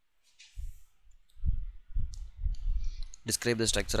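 Scattered low muffled thumps and a few sharp clicks, then a voice starts speaking near the end.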